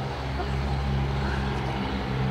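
The World Peace Bell, the world's largest swinging bell, ringing on with a deep, steady hum of several low tones and no new strike.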